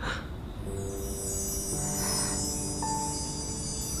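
Soundtrack music cue: a shimmering wind-chime sweep that enters about half a second in and runs downward in pitch, then rings on over soft, sustained low notes.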